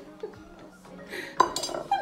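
A utensil knocking and scraping against a stainless steel mixing bowl while mixing biscuit dough, with a sharp clink about one and a half seconds in and another near the end.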